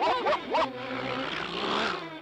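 Short cartoon vocal calls that rise and fall in pitch, then a rough, rasping cartoon dog growl that swells toward the end.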